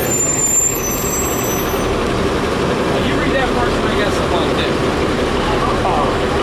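City bus running at the curb close by, its engine noise loud and steady, with a high thin squeal in the first two seconds.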